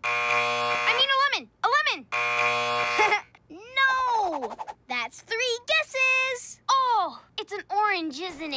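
Game-show style "wrong answer" buzzer sounding twice, each about a second long, marking wrong guesses. Between and after the buzzes there are gliding, wordless cartoon voice sounds.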